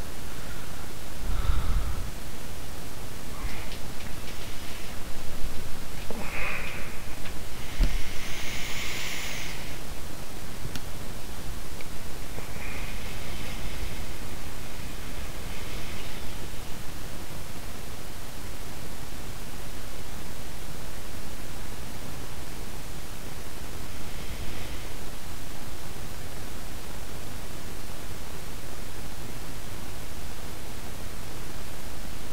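Steady hiss of an open microphone's noise floor, with a few faint, brief noises scattered through it.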